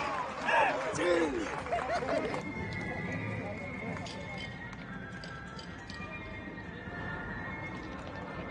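Footballers' shouts ringing out in an empty stadium for the first two seconds or so, then quieter pitch sound of live play with faint knocks of the ball being kicked.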